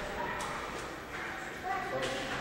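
Faint voices in the background over low room noise.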